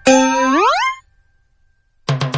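Comic sound effect: a bright, ringing tone held for about half a second, then sliding sharply up in pitch and cutting off about a second in.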